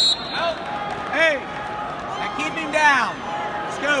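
Several loud shouted calls from people watching a wrestling match, over the steady din of a large arena crowd.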